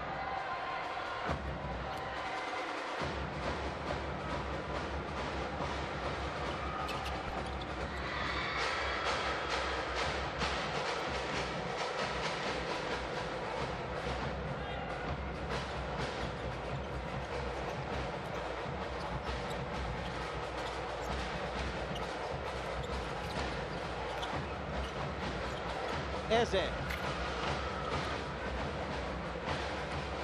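Basketball arena ambience: a steady hubbub of crowd noise that swells about eight seconds in, with a ball bouncing on the hardwood court. A brief loud burst of sneaker squeaks comes near the end.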